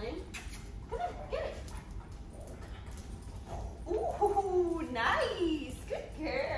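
A dog whining in high gliding whimpers, loudest from about four seconds in, as it plays tug with a rope toy.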